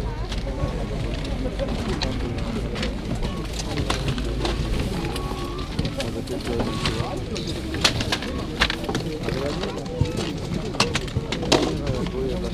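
Bird calls mixed with voices, over a steady low rumble, with many short sharp clicks and knocks, more of them in the second half.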